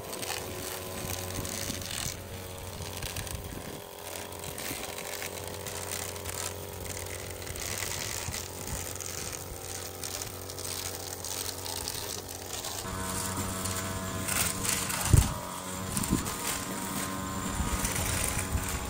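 String trimmer running, its spinning line cutting overgrown grass along the foot of a wooden fence, with a crackling sound from the grass. The note of the motor shifts about 13 seconds in, and a sharp thump comes about 15 seconds in.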